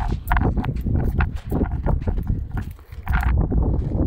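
Wind buffeting a phone microphone in a loud, uneven rumble, with footsteps crunching on gritty sand and rock as people climb a slope.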